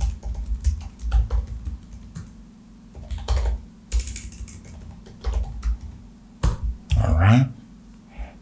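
Typing on a computer keyboard: irregular keystrokes in short runs.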